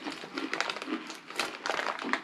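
Crinkling of a Takis snack bag's plastic film as a hand rummages inside it: a run of irregular crackles.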